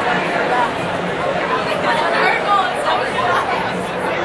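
Crowd chatter in a large indoor hall: many overlapping voices at a steady level, with no single clear speaker.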